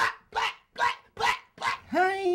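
A man barking like a dog: a rapid run of short, sharp woofs, about two to three a second.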